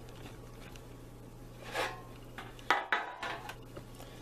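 Baking pan knocking and briefly rattling a little under three seconds in as a set sheet of gelatin fake skin is pulled out of it, with a softer rub about a second before. A steady low hum runs underneath.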